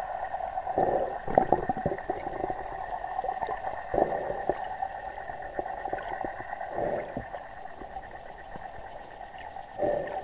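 Muffled underwater sound picked up by a camera under the water: a steady hum with scattered crackling clicks and a few louder gurgling swells, about a second in, at four seconds, near seven seconds and again at the end.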